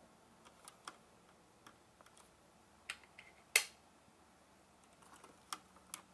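Scattered small plastic clicks and taps of hands handling LEGO bricks and pressing the set's light-up brick, with one sharper click about three and a half seconds in.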